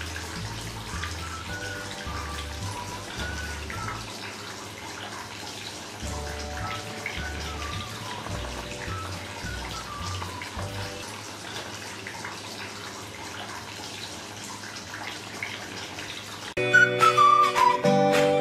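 Small pump-driven tabletop fountain running, its water falling in thin streams into a plastic basin with a steady splashing, under soft background music. The music gets much louder near the end.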